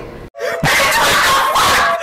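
A sudden loud, harsh scream-like sound starts after a moment of dead silence, holds steady for over a second and cuts off abruptly.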